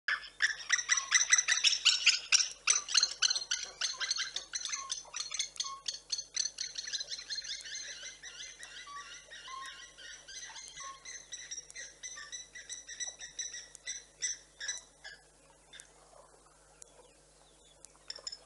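Birds calling: a fast run of harsh, chattering calls, loudest at first and fading away over the last few seconds, with a few short whistled notes partway through.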